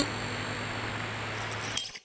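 Electronic sound effect for an animated logo: a hit at the start, then a steady electronic hum with thin high whines over a hiss, crackling glitches near the end, and a sudden cut-off.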